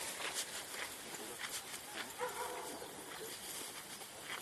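Outdoor background noise with a short animal call about two seconds in.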